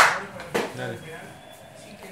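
A single sharp hand clap at the very start, the loudest sound here, with a short ring-out. A man says a word just after.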